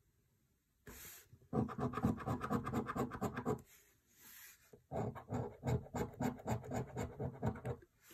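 A coin scratching the scratch-off coating from a paper scratch card in quick back-and-forth strokes. It comes in two runs, starting about a second and a half in and again about five seconds in, with a short pause between.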